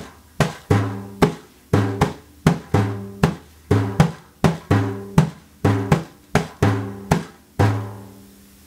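Cooperman 99 Slapback frame drum, an ocean drum with shot inside, played lap-style in the Arabic Maqsoum rhythm. Deep, ringing dum bass tones alternate with sharper pa slaps in a steady cycle of five strokes that repeats about every two seconds.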